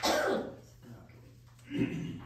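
A person coughs sharply at the start, then makes a second short throat-clearing sound near the end.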